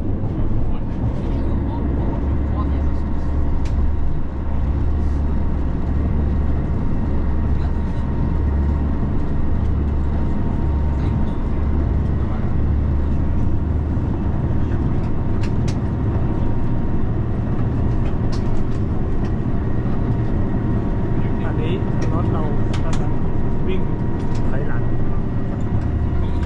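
Passenger train running, heard from inside the cabin: a steady low rumble of the wheels and running gear, with a faint steady tone and a few sharp clicks.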